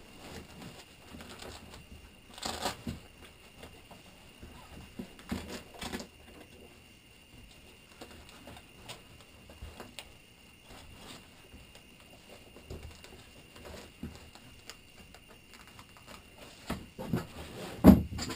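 Hook-and-loop (Velcro) strips being pressed together and pulled on, with the nylon of an M1955 flak vest rustling as its plate panels are fitted and the fabric is stretched. A few short rasps, the clearest about two and a half seconds in and again around five to six seconds in, and a thump just before the end.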